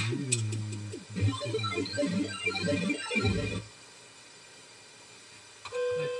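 Live electronic music from synthesizers and a loop station: gliding synth notes over a sustained low bass note, ending about two-thirds of the way in with a low drop, after which it goes quiet. A steady single tone starts near the end.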